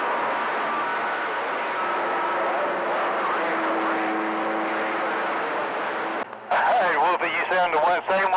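CB radio receiver static between transmissions: a steady hiss of band noise with faint whistling tones through it, until a voice comes back on about six seconds in.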